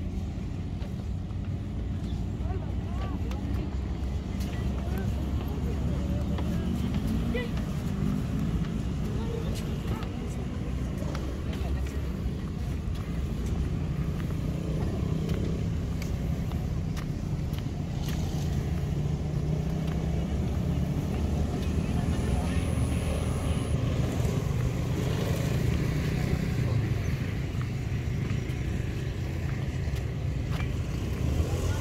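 Steady low rumble of road traffic, with engine drone from passing vehicles rising through the middle, and faint voices.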